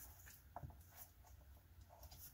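Near silence: room tone with a few faint, short clicks of a camera and plastic filter holder being handled.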